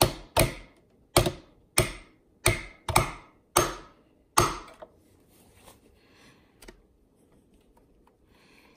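Light hammer taps on a small pin punch, driving a roll pin out of a sewing machine's hook drive gear. About nine sharp taps in the first four and a half seconds, each ringing briefly, then a single faint tap near the end.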